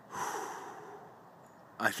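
A man's loud breath close to the microphone, a single sharp snort-like exhale that fades over about a second. He begins speaking near the end.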